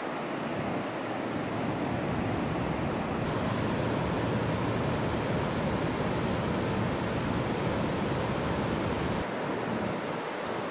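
River rapids and small falls: a steady rush of white water. The deepest part of the rumble drops away near the end.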